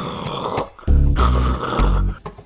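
Music with deep, heavy bass notes that hit about a second in and again near the end.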